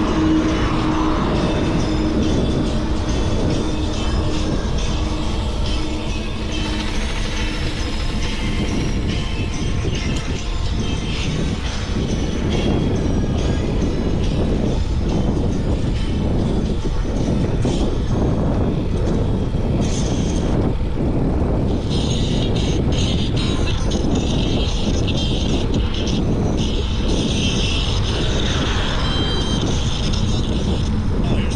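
Wind rushing and buffeting over the microphone of a camera riding on a moving bicycle, a steady low rumble throughout.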